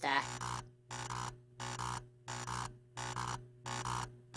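Electronic robot-working sound effect: a mechanical pulse repeating about three times every two seconds, over a steady low hum.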